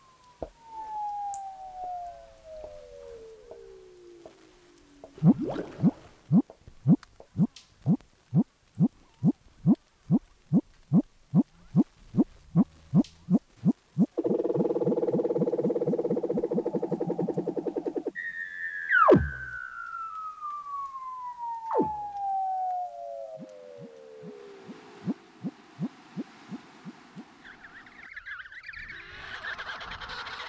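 Weddell seal calls underwater. Long whistling trills fall steadily in pitch over several seconds, a run of evenly spaced knocking pulses comes about two to three a second, a dense buzzing trill follows, and sharp downward chirps are heard twice.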